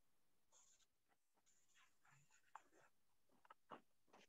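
Near silence: faint scattered rustles and a few soft clicks, as from an open microphone on a video call.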